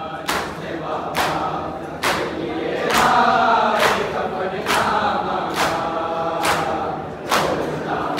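A large group of men chanting an Urdu nauha (lament) in chorus while beating their chests in unison (matam), a sharp slap landing about once a second in steady time with the chant.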